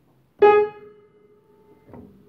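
A single upright piano note struck once, its overtones dying away within about half a second and leaving a faint lingering ring. With the D's dampers lifted, the note shares no harmonic with it, so it wakes almost no sympathetic resonance, only faint residual sound.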